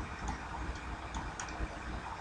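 Faint light ticks and scratches of a stylus writing on a pen tablet, over a low steady hum.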